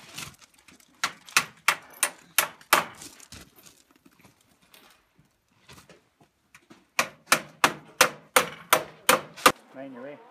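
Hammer nailing a rat guard along the bottom of a wall: two runs of quick, sharp strikes, about three a second, the first starting about a second in and the second near the end.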